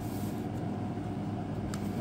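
Steady low background hum, like a fan or air conditioner running, with a faint tick near the end.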